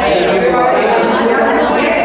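Several people talking at once in a room, voices overlapping so that no words stand out.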